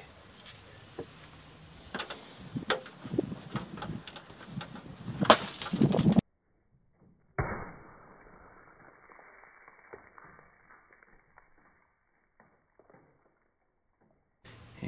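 An egg hits a box of clay cat litter hard, about five seconds in: a sharp hit and about a second of grains spraying and scattering, after small handling clicks. After a short silence the same impact returns slowed down, dull and deep, with the grains pattering down and trailing off over several seconds.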